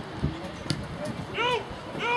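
A spectator's high-pitched shout, rising and falling in pitch, about one and a half seconds in and again at the end, over background crowd chatter, with two short sharp knocks early on.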